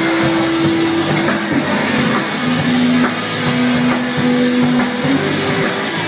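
Live rock band playing loud through a PA: electric guitars, bass and drum kit, with long held notes over the beat.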